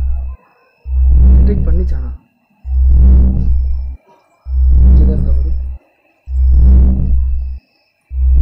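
Deep, booming electronic pulses, four of them about one and a half to two seconds apart, each lasting over a second with near silence between, over a faint steady high tone: a spooky sound effect or music laid over a ghost detector app scene.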